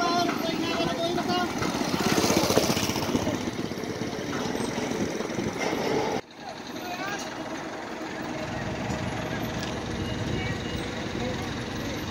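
Indistinct voices over the steady hum of a running engine from construction machinery. The sound drops out suddenly about six seconds in, then the steady hum comes back.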